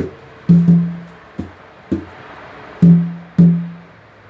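A drum struck about seven times in an uneven rhythm. The harder hits ring on briefly with a low, pitched tone, and the lighter ones are short, dry taps.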